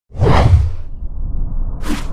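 Logo-animation sound effects: a loud swoosh over a deep rumble, fading within the first second, then a low rumble that carries on, with a second, shorter swish near the end.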